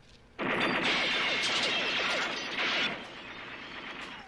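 A sustained burst of M60 machine-gun fire in a film soundtrack, starting suddenly about half a second in and lasting about two and a half seconds, then dropping to a quieter clatter.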